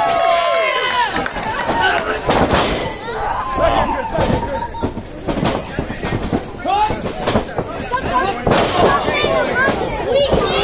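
Wrestlers and spectators shouting, with two sharp body impacts on the ring, about two and a half and eight and a half seconds in.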